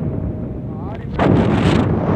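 Wind buffeting a phone microphone from a moving vehicle, a steady low rumble that jumps suddenly louder and hissier a little over a second in.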